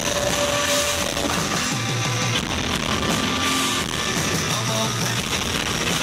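Live rock band playing at full volume, with electric guitar, bass guitar and drums, heard through a PA from the audience.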